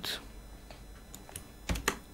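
Computer keyboard keystrokes: a few light key clicks, then two louder strokes close together near the end, as a block of code is commented out.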